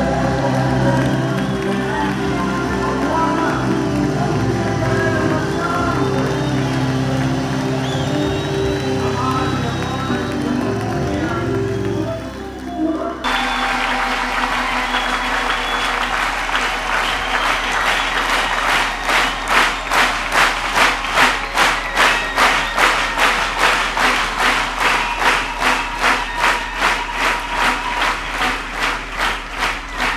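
Gospel choir singing with instrumental backing, cut off abruptly about thirteen seconds in. A large crowd's applause follows and settles into steady rhythmic clapping, about two claps a second.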